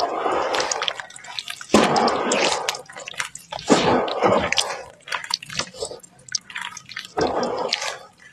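Hands squeezing and kneading crumbling red sand in a basin of muddy water: wet squelching and sloshing in strong surges every couple of seconds, with small drips and crackles in between.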